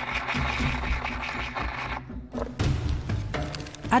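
Background music, with gritty grinding of glass in an agate mortar and pestle for about the first two seconds, reducing the glass to powder for enamel.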